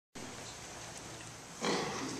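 Camera handling and room noise as a handheld camcorder is swung up from the floor, with a short louder noise about one and a half seconds in.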